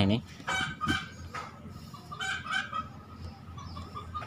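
Two short bouts of high-pitched animal calls in the background, the first about half a second in and the second a little past two seconds, over faint background noise.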